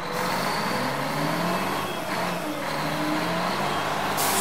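Sound effect of a garbage truck's engine running steadily, a low drone that wavers slightly in pitch.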